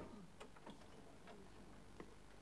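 Near silence with a sharp click at the very start and a few faint, short clicks and taps after it.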